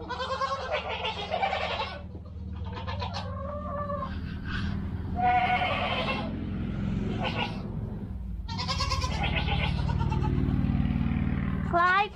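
Goats bleating repeatedly: about six wavering calls, some long and some short, over a steady low hum.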